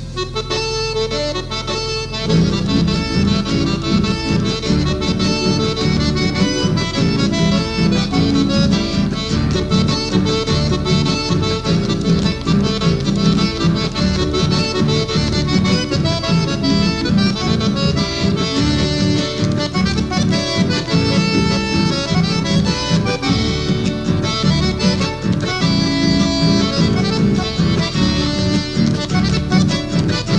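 Accordion-led chamamé, the folk music of Corrientes, with guitar. A thinner opening gives way to the full band with bass about two seconds in.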